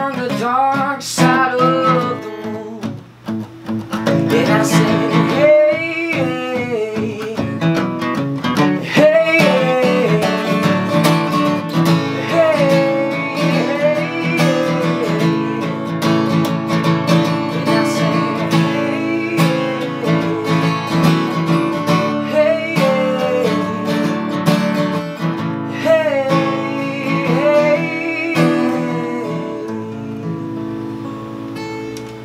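A man singing to his own strummed acoustic guitar, a live solo performance with the voice carrying the melody over steady chords.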